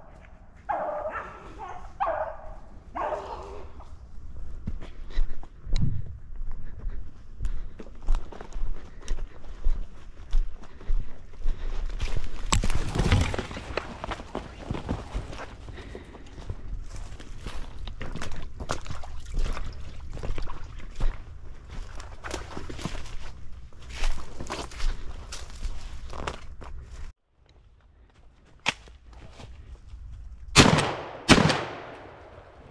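Footsteps crunching irregularly through dry leaf litter and brush, with beagles baying in the first few seconds. The sound drops out briefly near the end.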